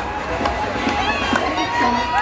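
Parade crowd noise: many marchers' voices talking and calling out at once over a street rumble, with a few sharp clicks.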